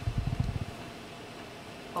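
A brief low, muffled rumble of quick bumps in the first half second or so, then a steady faint room hum.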